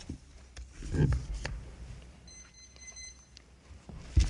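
Handling noise at a lectern: knocks, a low thump and rustling as papers are set down and arranged, loudest about a second in. Then a faint, steady, high electronic beep lasts about a second.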